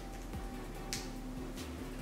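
Soft background music with a few sharp clicks as the U-part wig's snap clips are pressed shut at the hairline, the loudest about a second in.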